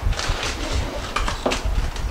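Aluminium foil crinkling and rustling as it is handled over a baking tray, with a few sharp clicks and low bumps.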